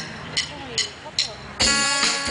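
A drummer's count-in: four sharp stick clicks about 0.4 s apart, then about a second and a half in the band comes in together with electric guitars and drums.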